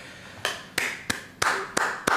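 A quick run of about five short, sharp slaps, like light hand claps or taps, roughly three a second.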